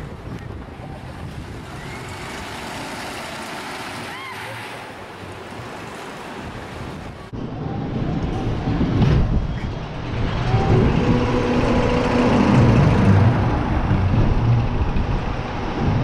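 Ride audio from a wild mouse steel roller coaster car running along its track: a steady rumble and rattle. About seven seconds in, the recording cuts and the rumble becomes louder and heavier.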